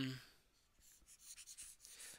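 Faint scratching of a stylus on a tablet screen: a run of light, irregular strokes in the second half.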